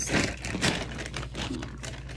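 Clear plastic zip-top bag crinkling as it is handled and a hand rummages inside it: a dense run of small crackles, loudest in the first second and thinning out after.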